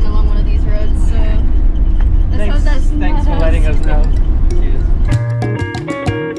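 Loud, steady low rumble of a bus driving on a rough road, heard from inside the cabin, with voices over it. About five seconds in the rumble cuts off suddenly and guitar music starts.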